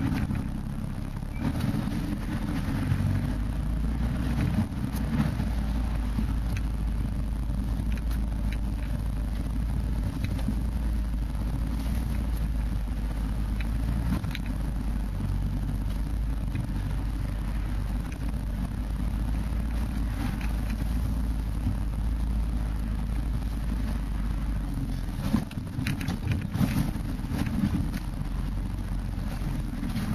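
4x4's engine running steadily, heard from inside the cab as it drives over a rough off-road track, with a deep constant rumble and a few sharp knocks near the end.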